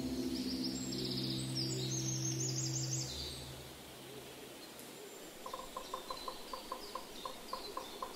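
Birdsong over the fading end of a held music chord: a quick run of high chirps in the first three seconds while the chord dies away, then after a short lull a steady series of short repeated calls, about four a second.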